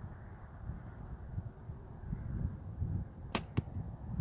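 A 60-pound Bear Archery compound bow being shot: a sharp snap at release, then a second sharp knock about a quarter second later as the arrow strikes the hay-bale target. Wind rumbles on the microphone throughout.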